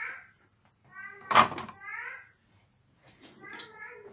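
A high-pitched voice making several short calls, with one sharp knock about a second and a half in, the loudest sound.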